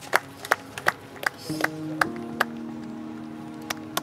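Sharp hand claps, several in a row about every 0.4 s, then more sparsely. Background music with long held low notes comes in about a second and a half in.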